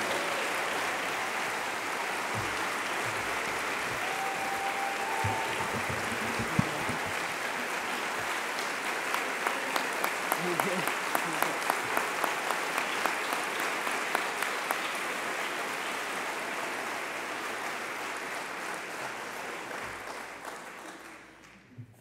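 Audience applauding for about twenty seconds. Single sharp claps stand out in the middle, and the applause fades away just before the end.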